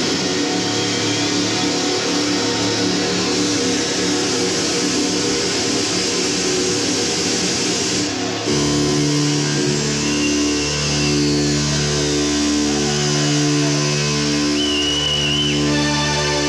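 Live hard rock band with distorted electric guitar and bass playing an instrumental passage, no vocals. It begins as a dense sustained wall of sound, and about eight seconds in it changes to slower long held notes that move in pitch every second or so. A high held guitar tone comes in near the end.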